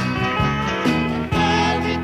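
Country band playing live, a full band sound with guitars.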